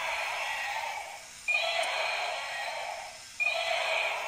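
Battery-powered dinosaur toy playing its electronic roar sound effect through its small speaker, repeating about every two seconds with short breaks between roars.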